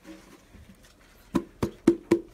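Three sharp knocks on a hard object, about a quarter second apart, starting just over a second in.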